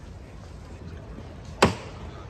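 A single sharp metallic knock about one and a half seconds in, with a brief ring: the capataz striking the paso's llamador, the door-knocker on the front of the float that signals the costaleros beneath it to lift.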